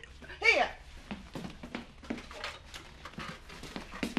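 A woman's short spoken word, then faint scattered clicks and rustles of a small flat tin being picked up and handled.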